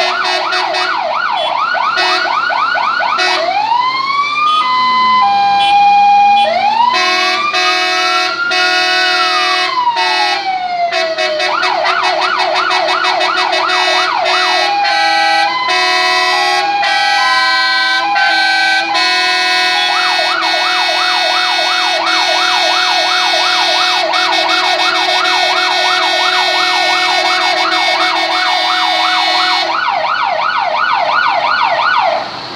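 Fire engine sirens sounding together and switching patterns. A fast yelp opens, then slow rising-and-falling wails come about four and seven seconds in. Around the middle there is a two-tone hi-lo, and from about twenty seconds on the fast yelp returns, over steady lower tones.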